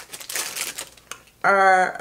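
A quick run of light clicks and rustling as a pair of sunglasses is picked up and handled, followed by a woman starting to speak about a second and a half in.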